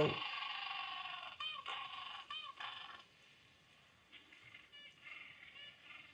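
Recorded penguin calls played back, trumpet-like: one long call with several harmonics over the first second or so, then a few short rising-and-falling calls. Fainter calls follow from about four seconds in.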